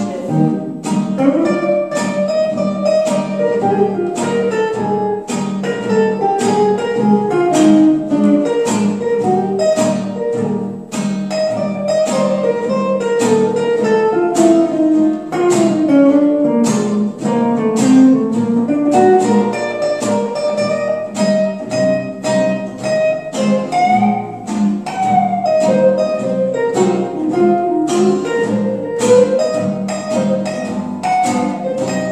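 Gypsy swing guitar instrumental: an acoustic guitar strums a steady rhythm of chords while an electric archtop guitar plays a lead melody that climbs and falls.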